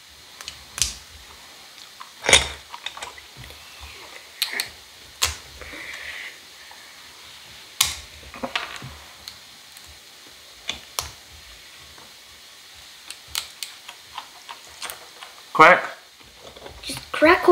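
Irregular sharp clicks and cracks of a walnut shell being squeezed in a small bench vise used as a nutcracker, mixed with the crackle of broken shell being picked apart by hand.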